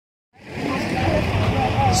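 Outdoor street ambience fading in after a brief silence: a steady low traffic rumble with faint voices of people around.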